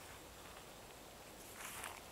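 Quiet background hiss, with one brief soft rustle near the end.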